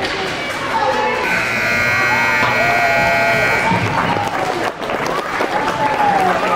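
Ice rink buzzer sounding one steady tone for about two and a half seconds, starting about a second in, over spectators' voices calling out across the rink.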